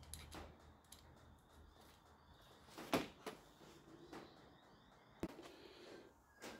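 Faint clicks and taps of small parts being handled while a buck converter board and its cooling fan are taken apart: one sharper click about three seconds in, a few lighter ones after.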